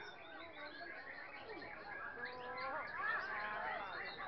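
Many caged songbirds singing at once: a dense, overlapping chorus of short whistles, trills and chirps, a little louder about three seconds in.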